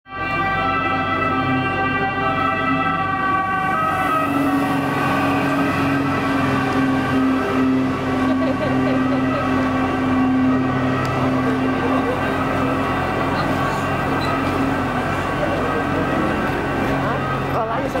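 Water ambulance's two-tone siren, alternating steadily between a high and a low pitch as the boat speeds past.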